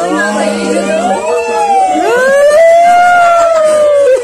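A loud human voice wailing in long held tones that glide slowly up and then down in pitch, like an imitated siren, with a lower steady tone under it during the first second.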